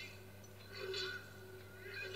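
Film soundtrack heard off a television set: short strained vocal cries, one about a second in and another starting near the end, over a steady low hum.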